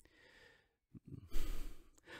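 A man's audible breath, sigh-like, taken in a pause before speaking again; mostly quiet until the short breath about a second and a half in.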